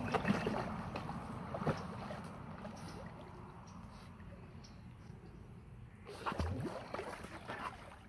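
Pool water lapping and splashing as an Alaskan Malamute paddles through it. The sound fades through the middle and grows busier again near the end.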